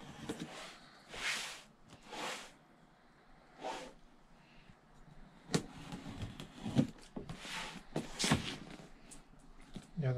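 Knife cutting into a cardboard box along its taped seams: a few long slicing strokes, then several sharp knocks and clicks as the blade stabs in and the box is shifted on the table.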